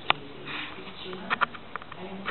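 A woman's voice reading aloud in Italian, with a short sharp click just after the start.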